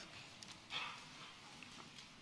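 Quiet room tone through the pulpit microphones, with one brief soft hiss about three quarters of a second in and a few faint clicks.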